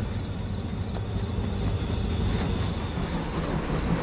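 Freight train wagons rolling along the track: a steady, continuous rumble of wheels and cars.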